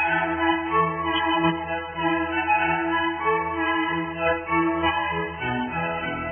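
Background music played by bowed strings, violin over cello, in long sustained notes; lower notes come in near the end.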